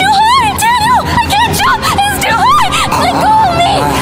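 A woman screaming in a string of short, high shrieks that rise and fall, with music playing underneath.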